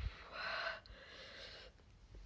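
A woman's two sharp, breathy gasps through pursed lips, the first louder than the second, as her mouth burns from a just-eaten Dragon's Breath superhot chilli.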